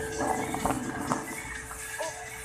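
Background music playing over a store's sound system, with a few light knocks and rattles from a wire shopping cart being pushed.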